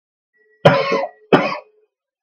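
A man coughing twice, two short coughs about two-thirds of a second apart.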